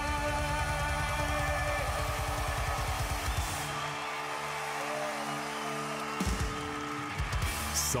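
Live rock band ending a song: a held guitar chord rings over a rapid drum roll, and the song closes with two final drum-and-cymbal hits near the end.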